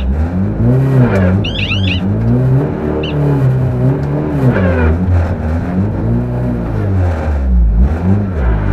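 Rally car engine revved again and again, its pitch rising and falling about every two seconds, with a brief cluster of high squeals about one and a half seconds in. The car is in reverse and stays nose against trees: it is stuck off the road, trying to back out.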